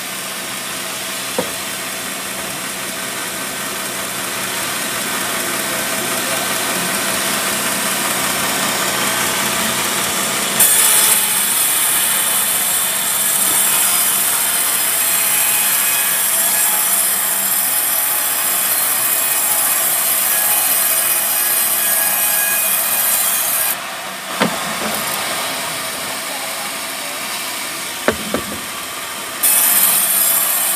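Large band sawmill running steadily. About ten seconds in, the blade goes into a teak board, and the sound gets louder and brighter for about thirteen seconds before dropping back as the cut ends. A new cut starts just before the end, and a few short knocks are heard along the way.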